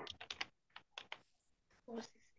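Computer keyboard being typed on: a quick run of about eight light keystrokes over the first second or so, then a pause.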